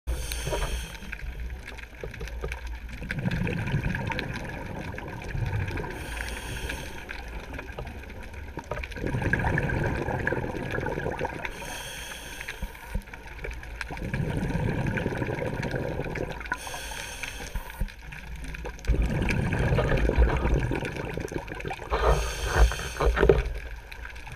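Scuba diver breathing through a regulator underwater. A short inhale hiss comes about every five seconds, each followed by a few seconds of bubbling as the exhaled air escapes; five breaths in all.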